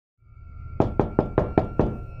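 Six quick knocks on a door, about five a second, starting nearly a second in.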